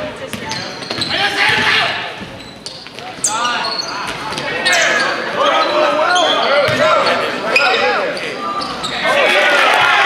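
Basketball game on a hardwood gym floor: the ball bouncing and sneakers squeaking in short, repeated chirps, with players and spectators shouting. The crowd noise swells near the end.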